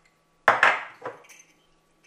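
Small glass jar used as a ramekin knocking against a stone worktop while being handled: a sharp clatter about half a second in, then a smaller knock a moment later.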